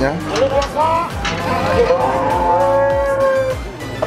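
Cattle mooing: a few short calls in the first second, then one long drawn-out moo lasting about a second and a half.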